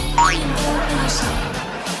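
A cartoon sound effect, a quick rising whistle-like glide, plays just after the start over background music, which carries on steadily.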